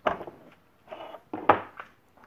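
A metal toggle clamp is flipped open with a sharp clack, then a small aluminum mold is slid out of the molding machine and knocked down onto a wooden bench about a second and a half in.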